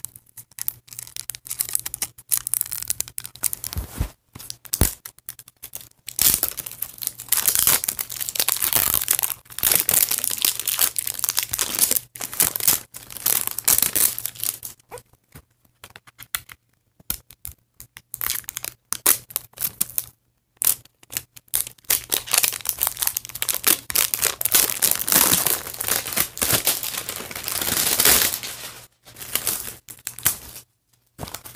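Packaging being torn open and crinkled by hand in irregular scratchy bursts, with a couple of short pauses.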